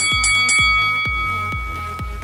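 An electronic interval-timer chime rings as a new timed set begins: three quick bright strikes, then a bell-like tone that fades over about two seconds. It sounds over electronic dance music with a steady drum beat.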